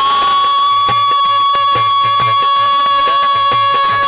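Rajasthani folk devotional music: one long, high, held note that slides up into place at the start and then stays steady, over a quick, even beat on hand drums.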